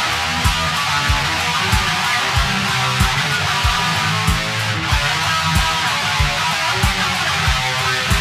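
ESP LTD electric guitar played between sung lines, over a backing beat with a low thump about every two-thirds of a second and a held low bass note.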